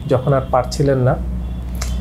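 A man speaking Bengali for about a second, then a short pause with a steady low hum and a brief hiss near the end.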